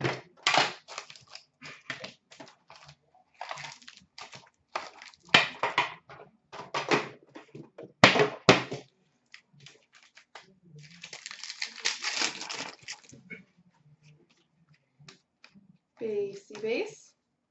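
Hockey card packaging being opened by hand: sharp crackles and rips of the box and its plastic and foil wrappers, then a pack torn open in one ripping, crinkling stretch of about two seconds. Quieter card handling follows near the end.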